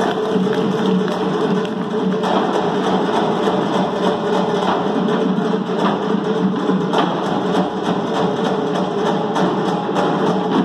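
Fast Caucasian folk drumming on many small hand drums, a dense stream of rapid beats within the dance music.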